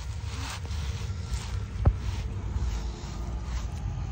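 Low rumble and rustle of a phone being handled and swung about, with one sharp click just under two seconds in.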